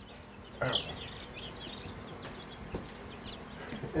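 Baby chicks peeping in a brooder: a scattering of short, high peeps.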